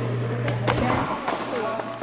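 A steady low hum runs under faint voices, with three sharp knocks: about half a second in, just after, and a little past a second.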